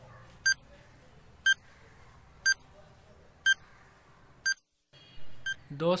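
Countdown-timer sound effect: a short electronic beep once a second, six beeps in all.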